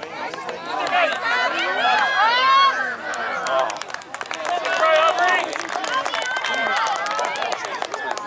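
Several voices at a soccer game shouting and calling over one another, with no clear words, and light ticking through the second half.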